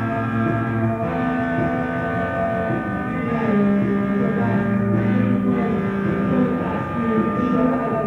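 Band playing a song: sustained chords held over a low bass line.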